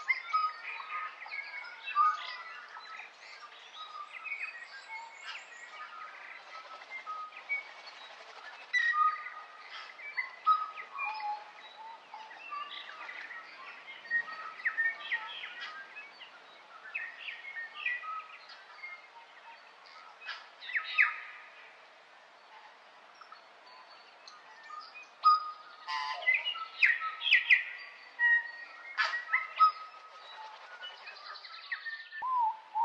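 Several birds chirping and calling in a forest chorus: short, varied calls overlapping throughout, with a lull a little past two-thirds of the way through and a busier run of calls near the end.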